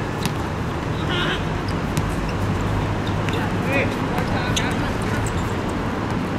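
Players' short shouts and calls during a small-sided football game, with a few sharp knocks of the ball being kicked, over a steady background hiss and hum.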